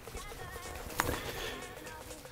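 Over-ear headphones being handled and put on, with one sharp click about halfway through, over faint background music.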